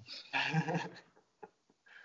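A man laughing briefly, a short chuckle of under a second, then a pause.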